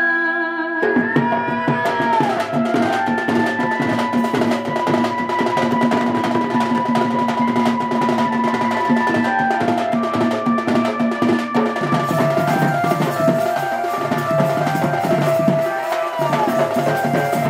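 Instrumental folk music accompaniment: fast, dense drumming with held melody notes over it, coming in about a second in as the singing stops.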